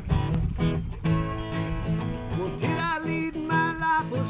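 Acoustic guitar strummed in a steady rhythm. A man's sung note, wavering in pitch, comes in over it past the middle and is held to the end.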